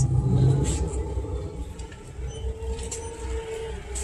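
A motor vehicle's engine running nearby: a low rumble with a steady hum.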